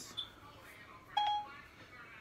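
Short electronic beeps from an iPhone as Siri handles a spoken request: a brief high blip just after the start, then a short beep about a second in.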